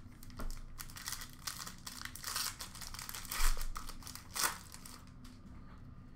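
Trading card pack wrappers crinkling and tearing as packs are opened and cards are handled, in irregular rustles with a few louder crackles in the middle.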